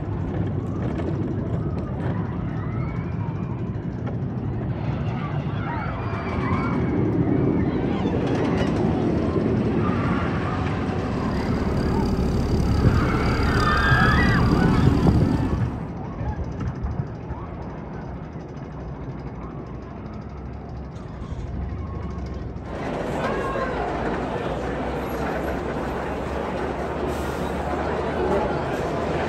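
Twisted Colossus, a Rocky Mountain Construction hybrid roller coaster: trains rumbling along the steel track on its wooden structure, with riders screaming and shouting. The rumble and screams are loudest just before halfway, then cut off suddenly. The last few seconds hold people talking near the track.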